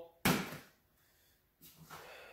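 A plastic coffee can set down on top of another can: a single sharp knock about a quarter second in, dying away within half a second.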